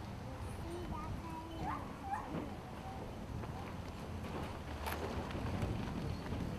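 Outdoor ambience: a steady low rumble under faint, distant voices, with two short rising chirps about two seconds in and a single sharp click near the end.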